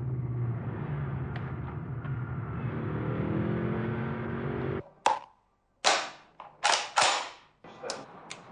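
Car engine and road noise heard from inside the cabin, the engine's pitch rising as the car speeds up, then cut off suddenly. Five sharp cracks follow over the next three seconds.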